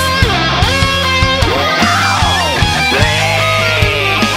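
Heavy metal instrumental passage: an electric lead guitar line swoops up and down in pitch in arcs about once a second, over a held low bass note and a steady drum beat.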